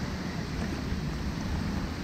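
Wind on the microphone: a steady low rumble with no distinct knocks or splashes.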